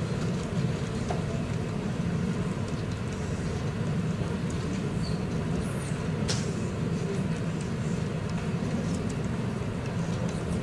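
A steady low rumbling noise with no clear events.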